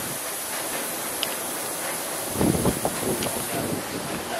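Steady workshop background noise with a short cluster of knocks and clatter a little past halfway, typical of metal front-fork tubes being handled and fitted.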